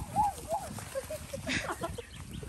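Faint, short vocal sounds from small children, with irregular low thuds of footsteps on grass.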